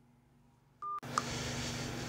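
Phone speakerphone on an unanswered call: a short electronic beep about three-quarters of a second in, then a loud steady hiss of line noise with a click in it for the last second.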